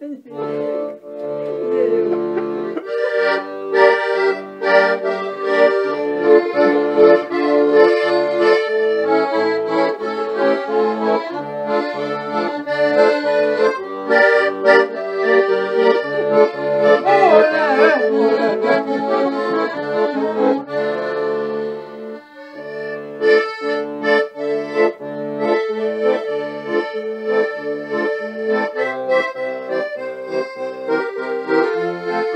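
Piano accordion playing a tune: melody and held chords over a bass line, with a brief drop in loudness about two-thirds of the way through.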